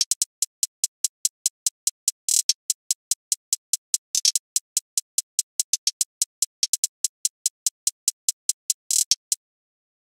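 Trap hi-hat loop previewed on its own: a steady run of crisp closed hi-hat ticks, about five a second, broken by quick rolls about two, four and nine seconds in. It stops about nine seconds in.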